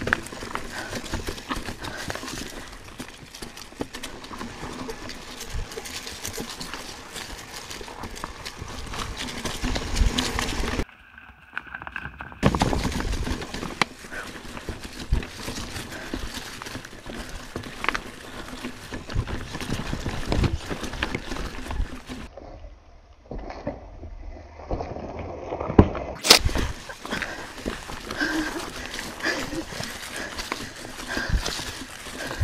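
Mountain bike rolling over rocky singletrack: tyres on dirt and rock with a constant clatter of knocks and rattles from the bike as it hits rocks and roots. One sharp, loud knock stands out about 26 seconds in.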